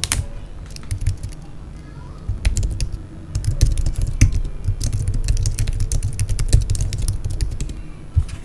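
Typing on a computer keyboard: irregular key clicks, with low thuds from the desk underneath.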